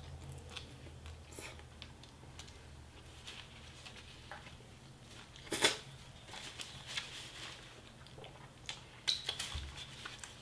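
A person chewing fried chicken drumstick, with wet mouth clicks and small crunches and one louder, sharp crackle about five and a half seconds in.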